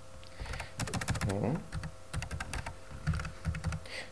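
Computer keyboard keystrokes: typing in two quick runs of clicks, about a second in and again near three seconds.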